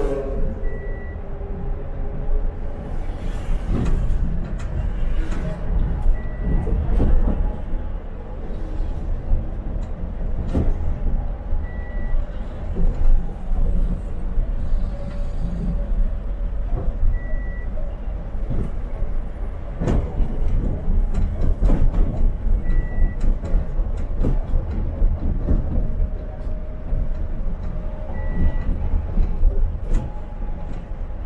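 Inside a TransMilenio articulated bus on the move: steady low engine and road rumble, with occasional knocks and rattles from the cabin. A short high beep repeats about every five and a half seconds.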